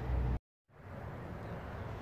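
Low rumble of outdoor background noise on the microphone. It cuts off abruptly about half a second in to a moment of dead silence at an edit, then returns as a faint, even outdoor hiss.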